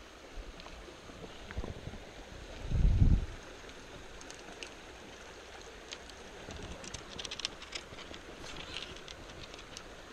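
Small shallow stream running over rocks: a steady rush of water. About three seconds in, a brief low rumble on the microphone is the loudest thing.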